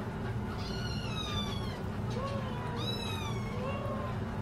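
Young nursing kittens mewing: a high mew that falls in pitch about half a second in, another near the three-second mark, with softer mews overlapping between them.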